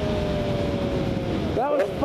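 Sport motorcycle engine running at steady revs, its pitch sinking slowly as it eases off, with wind rushing over the helmet microphone. A voice comes in near the end.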